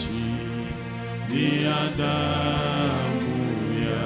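A man singing a slow, chant-like worship song into a microphone over held accompaniment chords.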